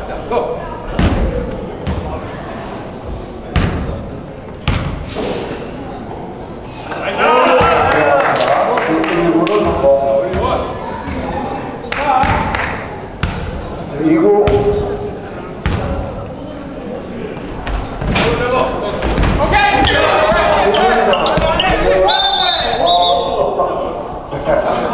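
Basketball bouncing on a hardwood gym floor in separate sharp knocks, with several men's voices shouting and calling loudly in a large echoing hall, the voices loudest in the second half.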